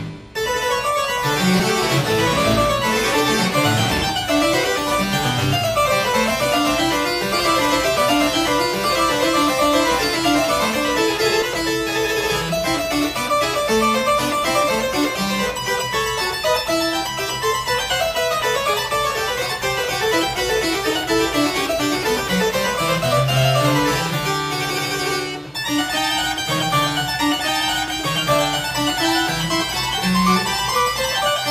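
Double-manual French-style harpsichord, built by Hubbard and Di Veroli after a 1769 Taskin, playing a French Baroque keyboard piece on full registration (8+8+4'). It gives a steady stream of plucked notes, with short breaks between phrases just after the start and about 25 seconds in.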